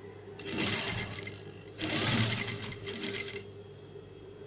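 Sewing machine stitching in two short runs, the first about a second long and the second, a little louder, about a second and a half, with a brief stop between.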